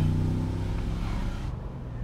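2002 Mercedes-Benz SL55 AMG's supercharged V8 running on the move, with a steady low note that is loudest at the start and fades over the next two seconds. Wind and road noise come in through the open roof.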